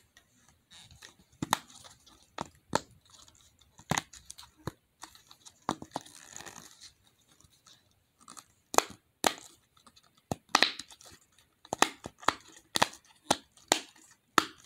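Silicone bubbles of a butterfly-shaped simple dimple fidget toy being pressed in, giving an irregular run of sharp pops and clicks that come thicker toward the end.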